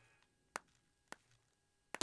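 Near silence, broken by three faint, short clicks spaced about half a second apart.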